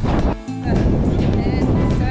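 Strong wind buffeting the microphone, a heavy low rumble that drops out for a moment about half a second in. Music plays underneath.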